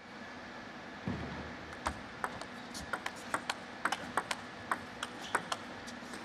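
Table tennis rally: a plastic ball struck back and forth, clicking sharply off the rackets and the table. The clicks come about two to three a second, starting about two seconds in with the serve.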